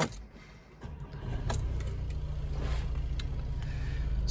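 Volkswagen Sharan's 2.0 TDI diesel engine starting about a second in and then idling steadily, heard from inside the cabin.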